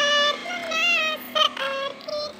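Music: a high voice sings a wavering, ornamented melody in short phrases over a steady low drone.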